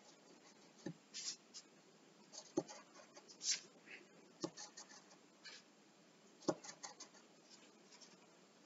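Faint pencil scratching on paper in short, quick strokes as diagonal shading lines are drawn, with a soft knock about every two seconds.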